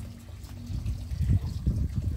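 Running water at a stone-lined spring reservoir, faint under an uneven low rumble.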